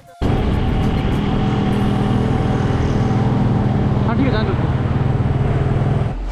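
A motor vehicle engine running loud and close at a steady speed; it cuts in abruptly just after the start and stops abruptly at the end. A brief voice is heard about four seconds in.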